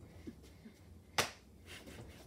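A single sharp knock about a second in, in an otherwise quiet room.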